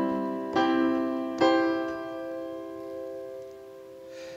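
Piano chords played from an Ableton Push 2's pads through the Chord Player and joined smoothly with the sustain pedal for a legato effect. A chord is already sounding, new chords strike about half a second and a second and a half in, and the last one rings on and fades.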